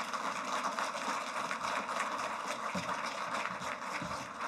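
Audience applauding: steady clapping from many hands.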